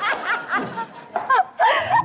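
People laughing in short bursts.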